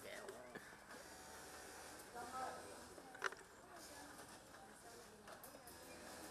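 Quiet conversation between a few people, the voices faint and low in level, with one brief sharp click about three seconds in.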